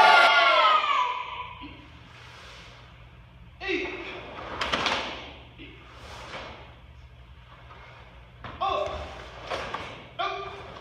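Karate students shouting short, sharp kiai in unison during a kata, with sharp thumps and snaps of strikes, stamps and gi sleeves between them. The shouts echo in a large hall; the first one fades out over the first second.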